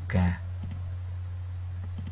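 One spoken syllable at the start, then a few faint clicks at a computer, over a steady low hum.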